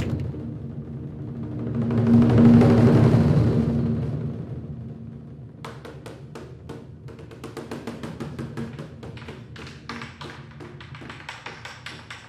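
Credits music: a low sustained drone that opens on a hit and swells up over the first few seconds before fading back, then rapid ticking percussion, like typewriter clicks, through the second half.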